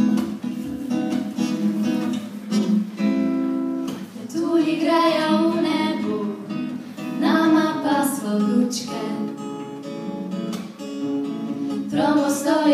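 Acoustic guitar strummed in chords as a song's accompaniment, with a singing voice coming in over it about four seconds in.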